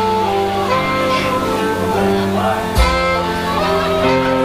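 Live rock band playing loudly on stage: electric guitar, saxophone and drums, with a heavy drum hit near the end.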